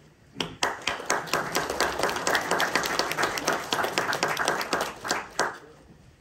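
Audience applauding in a hall: dense clapping breaks out about half a second in and dies away with a few last claps after about five seconds.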